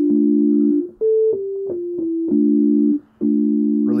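Chords from the Massive software synthesizer, played on a keyboard: a simple progression of sustained, organ-like chords. Each chord is held for about half a second to a second before the next, and there is a short break about three seconds in.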